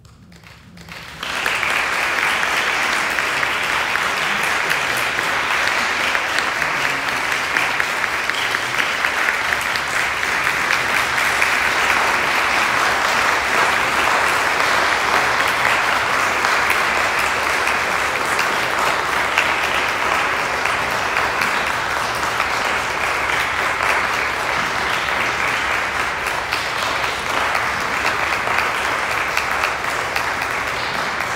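Audience applause for a solo classical guitar performance, breaking out about a second in as the final piece ends and going on steadily and loudly, without a break.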